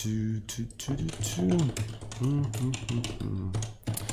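Computer keyboard typing: a run of quick, irregular key clicks, under a low, muttered voice.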